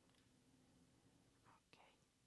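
Near silence: room tone, with a couple of very faint, brief sounds near the end.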